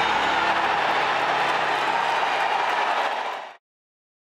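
Golf gallery cheering and applauding a holed putt, a loud, steady crowd noise that cuts off suddenly about three and a half seconds in.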